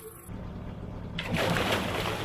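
A hooked catfish on a bankline thrashing at the surface beside a boat, water splashing hard in surges starting about a second in, over a steady low hum.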